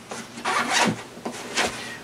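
The zipper of a 5.11 RUSH MOAB 10 sling pack's front admin pouch being pulled open, a scratchy run of zipper noise from about half a second in, as the pouch flap folds down.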